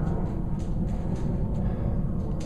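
Low, steady rumble of wind buffeting a handheld phone's microphone outdoors, with a few faint handling knocks as the camera swings.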